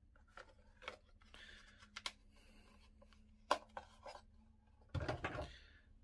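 Handling sounds of a tooled leather knife sheath: leather rubbing and the knife being drawn out of it, with a few sharp clicks and a louder rustle near the end.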